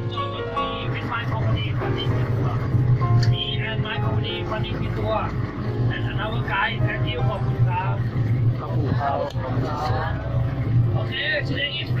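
Speedboat engines running at cruising speed, a steady low drone, with a man talking over it. Background music fades out in the first second.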